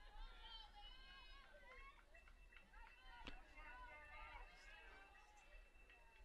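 Faint, distant voices of players and spectators calling out across the field, with a single sharp knock about three seconds in.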